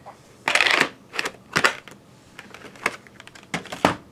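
VHS tapes and their plastic cases being handled: a short scraping rustle about half a second in, then a string of sharp plastic clacks and taps.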